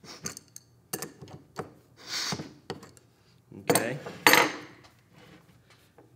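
An adjustable wrench turns the pinion shaft of a rack-and-pinion pneumatic actuator, giving metallic clicks and scraping as the pinion and rack gears engage. A louder clatter comes about four seconds in.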